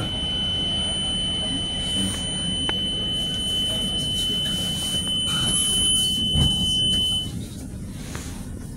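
MEI hydraulic elevator car running: a steady low rumble with a steady high-pitched tone like a buzzer over it. A thump comes a little after six seconds in, and the tone and rumble cut off just after seven seconds, as the car's run ends.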